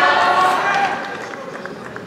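Several voices shouting at once, loudest in the first second and then dying down.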